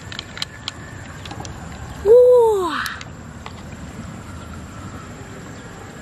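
A small knife tapping and scraping against mussel shell and pearls, a few sharp clicks, then about two seconds in a single loud pitched call that rises and then falls.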